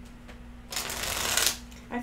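A deck of tarot cards being shuffled in one quick burst, a little under a second long, about halfway in.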